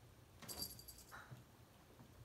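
A small jingle bell rattles briefly, about half a second, as a cat moves about, followed by a soft low knock.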